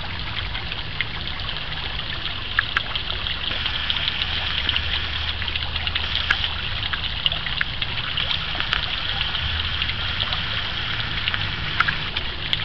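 Water pouring in a thin stream from a spout in a concrete block and splashing steadily into a small lined garden pond, with small droplet splashes. A low steady rumble sits underneath.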